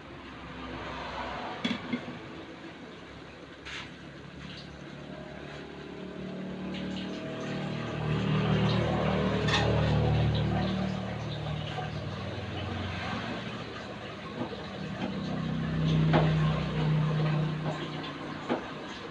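A low motor hum swells up and fades away twice, like engines passing by. A few sharp clicks of a metal spatula against an aluminium wok come in the first seconds.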